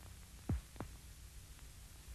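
Steady low hum and hiss of an old optical film soundtrack, with two dull thumps, the first about half a second in and a softer one about a third of a second later.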